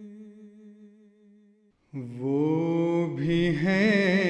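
Unaccompanied nazam vocals: a held, wavering hummed note fades away, then after a short gap a male voice comes in about halfway through on a long note that swoops up and then wavers.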